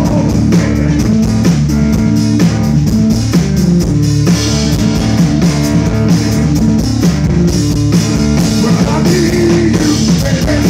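Live rock music played loud on a Rhodes electric piano and a drum kit, with steady rhythmic drum and cymbal hits.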